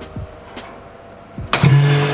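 Chamber vacuum packing machine starting as its lid is pressed shut: about one and a half seconds in, the vacuum pump comes on suddenly and runs with a steady, loud hum as it draws the air out of the chamber.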